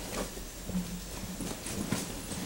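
Footsteps of hard-soled shoes on a wooden stage floor: a few irregularly spaced clicking steps.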